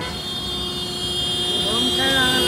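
City road traffic passing close by, with a steady high-pitched whine from a passing vehicle that grows gradually louder.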